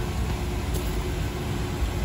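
Jakobsen 12 surface grinder running, a steady machine hum with a few steady tones held throughout.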